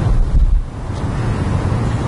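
Loud low rumbling noise on the microphone, like wind buffeting, with no words over it.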